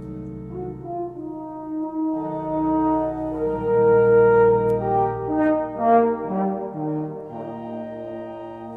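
French horn playing a slow melody of long held notes over sustained pipe organ accompaniment, growing louder in the middle.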